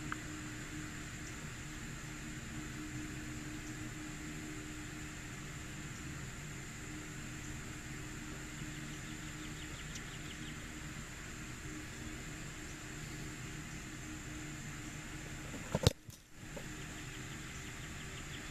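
A single sharp thud of a football being kicked off a kicking tee near the end, over a steady background hum.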